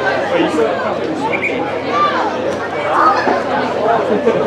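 Indistinct chatter of several people talking over one another at once, no single voice clear.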